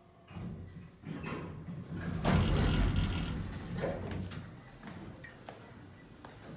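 A door being opened and passed through: a few clicks and knocks, then a louder rush of noise for about a second starting about two seconds in, and softer knocks after.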